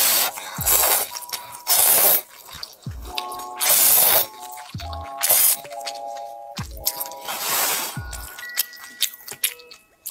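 A person slurping glass noodles out of soup, about six loud wet slurps, the loudest about 2 and 4 seconds in. Background music with a repeating melody and bass notes plays throughout.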